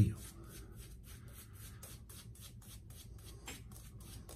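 A brand-new, stiff boar-bristle shaving brush being worked over lathered beard stubble, making quick, repeated brushing strokes.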